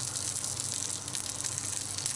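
Burger patty frying in hot oil in a frying pan: a steady sizzle with fine crackling.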